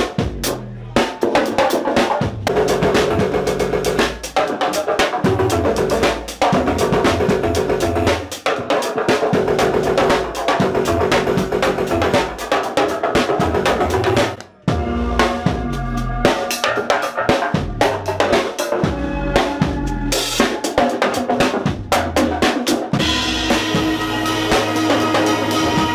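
Drum kit played live, fast and dense, with rapid snare and kick drum strokes in a driving groove. It stops briefly just past the halfway point, then picks back up.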